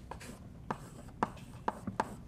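Chalk writing on a blackboard: about five sharp taps as the chalk strikes the board, with light scratching between.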